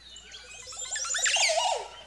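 Short transition sound effect: a rapid flurry of chirping, twittering glides that builds up and ends in a falling sweep.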